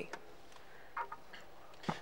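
Quiet room tone with a few faint ticks about a second in and a sharper click near the end.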